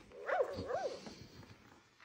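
Robotic plush toy puppy giving two short dog-like yips, each rising and falling in pitch, within the first second.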